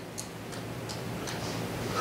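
A pause in speech: quiet room tone with a faint steady low hum and a few faint, short ticks.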